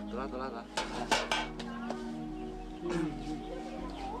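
A few sharp clinks of a metal pot and utensils, loudest about a second in, with short vocal sounds at the start and near the end.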